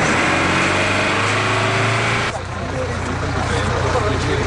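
Minibus engine running with a steady low hum, under a jumble of voices. The louder noise over the hum cuts off abruptly a little over two seconds in, and the hum carries on.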